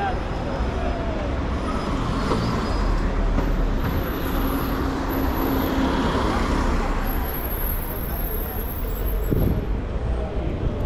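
City street traffic noise, with a taxi car driving past close by around the middle, over the voices of people nearby.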